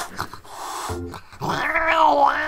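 Angry cat attacking, with scuffling knocks, then a long wavering yowl and growl beginning about a second and a half in.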